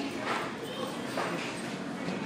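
Indistinct voices over a steady background din of chatter, with no words clearly spoken.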